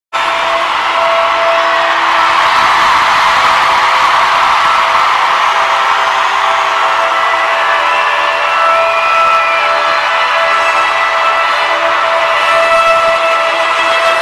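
A large stadium crowd cheering and screaming in a steady roar, with a few high shrieks or whistles rising out of it, over a held sustained tone.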